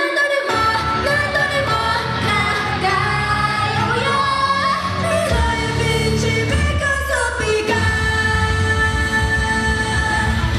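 Idol pop song played live over a concert hall's sound system: a female voice sings a melody over the backing music, and a heavier bass and beat come in about five seconds in.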